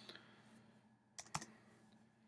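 Two quick keystrokes on a computer keyboard, close together about a second in, over quiet room tone: the Enter key pressed twice to start a new line of code.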